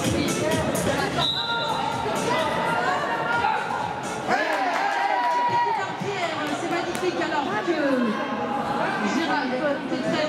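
Voices talking and chattering in a large, echoing indoor arena, with music in the background.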